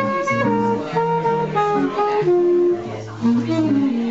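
Alto saxophone playing a melody of held notes that step up and down, over a guitar accompaniment.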